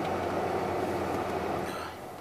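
Tesla Model S cabin climate-control fan blowing steadily, then turned down near the end so its rushing noise fades away.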